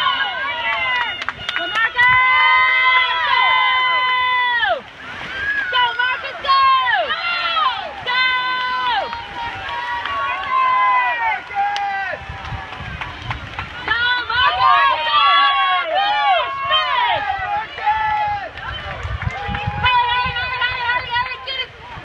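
Spectators yelling and screaming in high, drawn-out cheers, several voices overlapping, with some held for a couple of seconds at a time.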